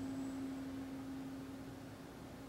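A single steady pure tone, with no overtones, over quiet room hiss. It softens a little in the second half.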